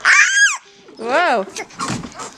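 A toddler's high-pitched excited squeal, followed about a second in by a shorter, lower vocal sound that rises and falls.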